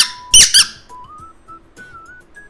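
Egg-shaped penguin squeaky dog toy squeezed by hand: a sharp, high squeak right at the start, then a quick double squeak about half a second in, with a fairly firm-sounding squeaker.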